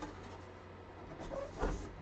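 Large cardboard box being handled and turned over: faint rubbing of cardboard, with a soft knock and rustle near the end.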